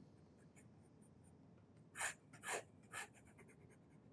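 Nahvalur Narwhal fountain pen with a medium nib scratching across paper: faint nib sounds at first, then three quick scribbled strokes about two, two and a half and three seconds in.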